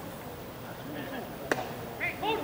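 A pitched baseball smacking into the catcher's leather mitt once, a sharp pop about one and a half seconds in, over the chatter of spectators.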